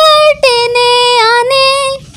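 A boy singing a Bengali song solo, without accompaniment, holding long sustained notes. The singing breaks off suddenly at the end.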